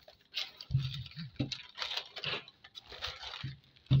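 Brown pattern paper rustling and crinkling as it is lifted, flapped and smoothed flat on a table, in several short bursts.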